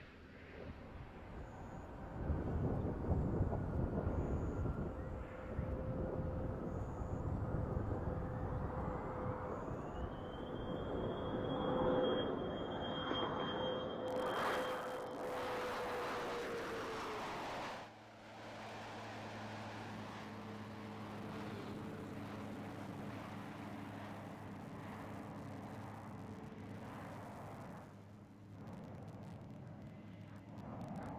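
Space Shuttle orbiter rolling out on the runway after touchdown: a rumble with a steady tone running through it, and a whine that rises in pitch about eight seconds in and then holds. The rumble drops away suddenly about eighteen seconds in, leaving a quieter, steady hum.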